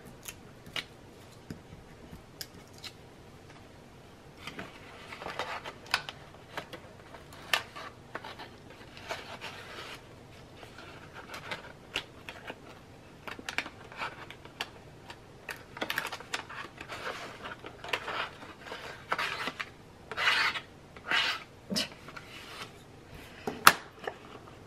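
Precision craft knife scratching and scraping on cardstock, with paper rubbing and rustling as the booklet is handled, in short scattered strokes. A sharp tap just before the end.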